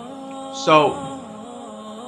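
Background music of sustained, droning chords that shift slightly partway through, with a man's single spoken word about half a second in.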